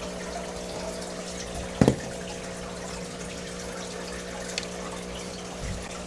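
A steady low hum of several fixed tones under an even water-like trickle, with one short sharp knock about two seconds in.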